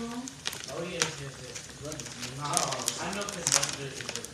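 Empanadas frying in a pan of hot oil: a steady sizzle with frequent sharp pops and crackles, under a person's voice talking.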